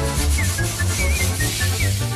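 Background music with a steady beat and short high melody notes, over a steady hiss of air being pumped into a toy car tyre.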